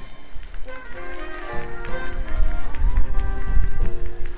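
School big band playing Latin jazz: held saxophone and brass chords over drums and percussion, growing louder toward the end.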